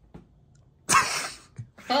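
A man's sudden, loud, breathy exclamation of amazement about a second in, followed near the end by the start of a spoken word.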